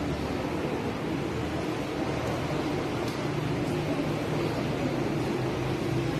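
Steady background noise of a busy open-sided hall, with a low hum that comes up about halfway through.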